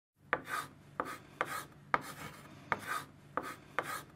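A series of seven sharp taps at uneven intervals, each followed straight after by a short scraping rasp.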